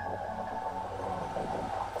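Steady background hum with a low drone underneath, unchanging throughout.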